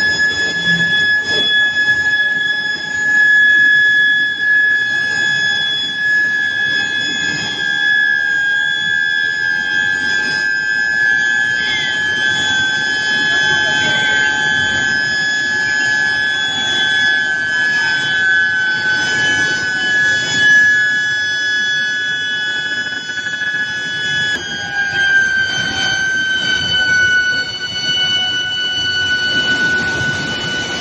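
Steel billet induction reheating furnace giving off a steady high-pitched whine over the noise of the mill machinery. The pitch steps down slightly near the end.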